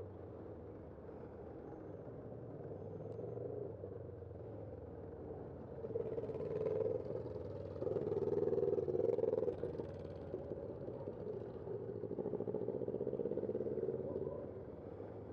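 Cross traffic at a city intersection: cars and a motorcycle driving past in several swells, loudest around the middle, over a steady low hum.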